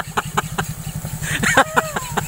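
Motor scooter engine running at low speed as the scooter is ridden slowly along a muddy dirt road, with a steady tapping about five times a second; a person laughs about one and a half seconds in.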